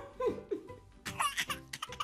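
High-pitched giggling: a short pitched laugh at the start, then a quick run of breathy giggles from about a second in.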